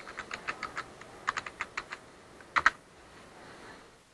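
Computer keyboard typing a search: quick keystrokes in two short runs, then a louder double click about two and a half seconds in.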